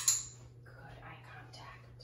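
A sharp click at the very start with a brief high ring, followed by about a second of soft, whispery rustling.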